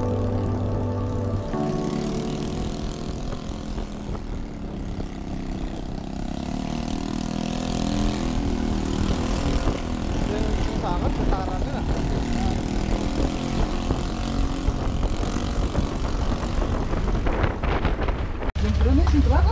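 Yamaha scooter being ridden, heard from a camera on the rider: a low, wavering engine hum under heavy wind noise on the microphone. Background music stops about a second and a half in.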